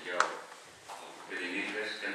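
Speech, with one sharp click just after the start.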